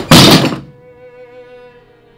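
A loud, heavy thump that dies away within about half a second, following a similar one just before. Quiet, sustained bowed-string music then plays on.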